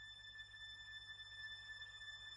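A faint, steady, high electronic tone held on one pitch, almost at silence: the quiet opening of an electronic cold-wave song.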